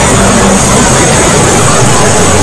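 Many cartoon and video soundtracks played on top of one another, blurred into a loud, steady wall of noise with a high hiss running through it and no single sound standing out.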